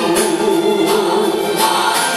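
Karaoke music: a backing track with a melody held and wavering in pitch over it.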